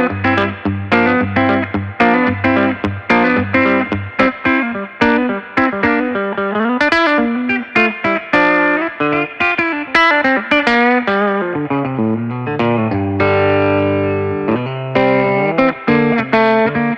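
Hartwood Revival semi-acoustic electric guitar, played through a miked combo amplifier: a busy riff of quickly picked notes and chords. About two-thirds of the way through, a chord is left to ring for a second and a half before the riff picks up again.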